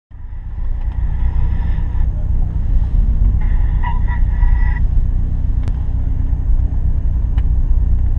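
Ford Sierra Sapphire RS Cosworth's turbocharged four-cylinder engine idling steadily with the car standing still, a deep, even rumble heard from inside the cabin.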